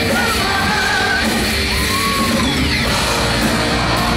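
Live rock band playing loud: electric guitars, bass and drums, with a male singer singing and shouting into a microphone.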